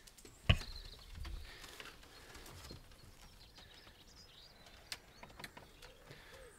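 A single sharp knock about half a second in, then faint outdoor garden ambience with distant birds chirping.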